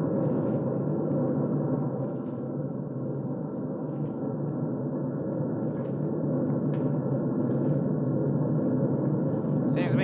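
Steady drone of a large bomber's engines, a radio-drama sound effect from an old recording with faint crackle, dipping slightly in level a couple of seconds in.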